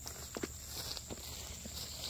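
A few soft footsteps on grass as a man walks away, over a steady high insect trill.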